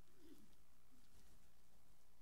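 Near-quiet room tone with a steady low hum and two faint, brief low sounds, about a quarter second in and about a second in.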